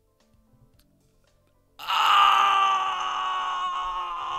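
Near silence, then a loud held tone starts abruptly about two seconds in and holds, its pitch sagging slightly.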